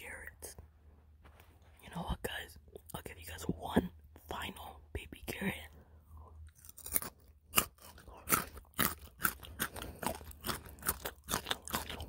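Crunchy chewing of raw baby carrots close to the microphone: many quick, sharp crunches from about halfway through, after softer mouth sounds and murmuring in the first half.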